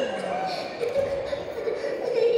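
A woman's voice over the public-address system, echoing in a large hall, with a few dull thumps.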